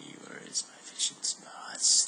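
A man's low, half-whispered muttering, broken by several short hissing sounds.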